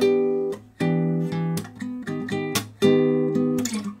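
Acoustic guitar playing a chord-solo passage: chords plucked and left to ring, three strong ones at the start, about a second in and near three seconds, with lighter single notes filling between them.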